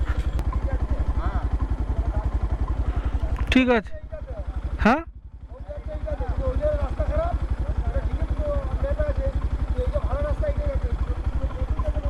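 Motorcycle engine running at low road speed with an even pulsing beat. It eases off about five seconds in, then picks up again.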